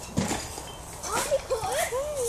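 A young child's high voice speaking in gliding, sing-song pitch from about a second in, after a short knock near the start.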